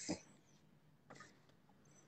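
Near silence: quiet room tone, with a faint short hiss about a second in.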